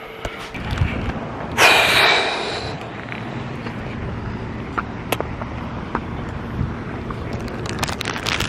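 Steady outdoor background noise picked up by a hand-held phone as its holder walks. A loud rushing hiss lasting about a second comes about one and a half seconds in, and there are a few faint clicks later.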